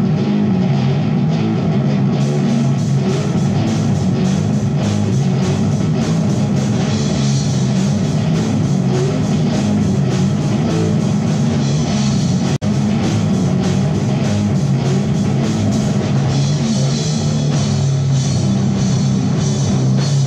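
A live rock band plays loudly in a room: electric guitar, electric bass and drum kit together. The drums' cymbals come in about two seconds in, and the sound cuts out for a split second past the middle.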